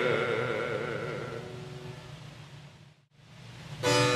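A baritone voice holding a final note with vibrato over a sustained harpsichord chord, dying away over about two seconds at the close of a movement. After a moment of silence, the harpsichord strikes the opening chords of the next movement just before the end.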